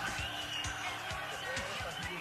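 A live band's music playing at low level, a steady drum beat about four hits a second, with voices over it.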